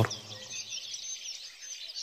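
Faint birds chirping in a soft background ambience, a series of short high chirps.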